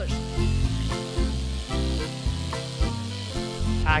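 Electric livestock clippers running with a steady hiss as they shear a dairy cow's coat, under background music with a steady beat.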